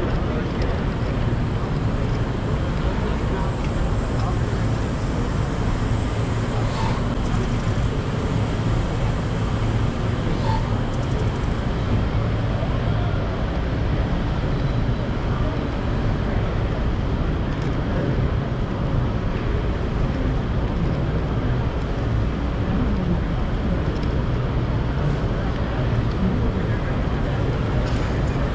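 Ambience of a large, busy exhibition hall: a steady low hum with indistinct crowd voices mixed in.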